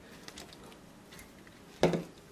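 Faint ticks of a plastic model body and glue applicator being handled, then one sharp knock near the end.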